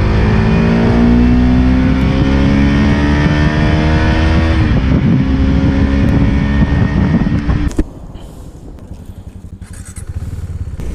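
KTM Duke 390's single-cylinder engine accelerating, its pitch rising steadily for about four seconds, then dropping at a gear change and running on until it cuts off suddenly near the end. A much quieter rush of wind follows.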